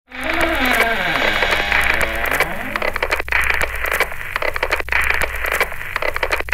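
Radio static with crackles, and whistling tones sliding up and down during the first few seconds, over a low steady hum.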